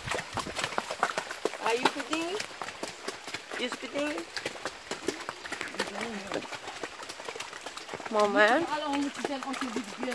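A horse's hooves stepping along a wet, muddy trail, irregular clicks and knocks, with short bits of voices, the loudest near the end.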